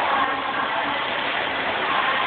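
Steady din of an indoor swimming pool: water splashing and lapping in the water under an even hiss of noise, with faint distant voices.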